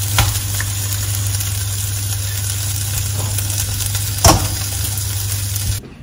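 Egg and tortilla frying in a nonstick pan, a steady sizzle over a low hum, with a sharp knock about four seconds in. The sizzle cuts off abruptly just before the end.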